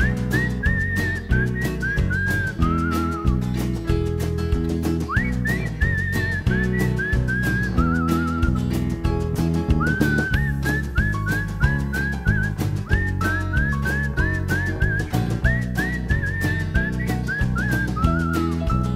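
Instrumental break in a blues band recording. Bass, drums and guitar keep a steady beat while a high, whistle-like lead melody plays over them in three phrases of short, scooped, bending notes.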